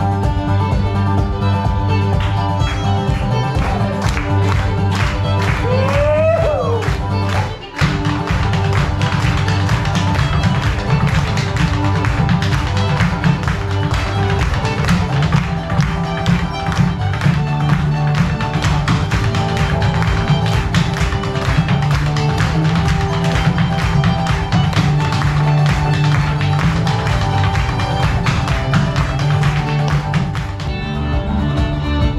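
Live Irish reel on fiddle and acoustic guitar, with an Irish step dancer's hard shoes tapping rhythmically on a wooden stage. The sound drops out briefly about eight seconds in.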